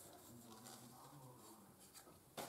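Near silence, with faint rubbing as grey PVC waste-pipe fittings are handled and pushed together.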